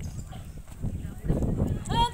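Feet of a marching drill squad stamping and shuffling together on paved ground, thickest in the second half. A shouted drill call starts at the very end.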